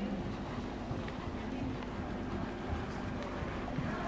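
Steady low rumbling noise of wind buffeting the microphone, with no clear events standing out.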